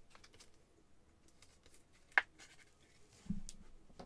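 Trading cards being handled and slid against one another: faint scratchy rustles and light clicks, with one sharp click about halfway through and a dull bump near the end.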